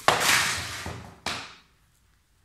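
A child's sneaker thrown onto a laminate floor, landing with a knock and skidding across it in a loud scrape that fades over about a second and a half, with a second, smaller knock a little over a second in.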